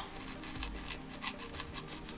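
Hand gouge cutting into a woodcut block: a quick run of small, faint scratching cuts, about five a second, as chips are lifted from the wood.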